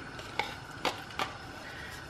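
Metal whisk stirring sour cream into thick gravy in a Dutch oven, with three light clicks of the whisk's wires.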